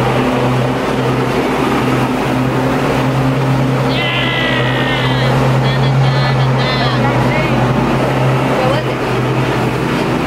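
Ride-on lawn mower engine running close by, a loud, steady drone that holds one pitch throughout. A person's voice comes over it briefly about four to seven seconds in.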